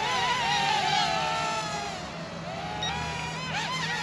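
Sharper Image Thunderbolt toy quadcopter's four small motors and propellers whining as it lifts off and climbs. Several whines run at slightly different pitches that waver, sag in the middle and rise again near the end.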